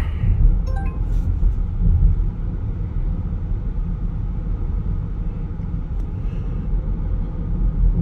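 Steady low rumble of road and engine noise inside the cabin of a 2020 Chevrolet Equinox while it is being driven.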